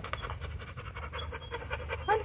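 A dog panting quickly and steadily, a rapid run of short, even breaths.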